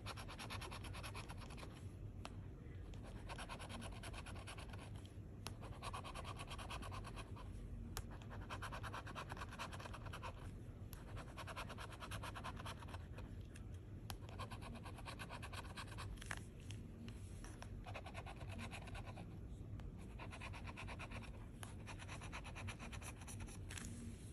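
A metal scratching tool scraping the silver latex off a scratch-off lottery ticket in rapid short strokes. The scraping comes in runs of two or three seconds with brief pauses between them.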